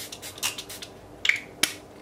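Pump-spray bottle of facial mist spritzing at the start, followed by a few small handling sounds and one sharp click about one and a half seconds in.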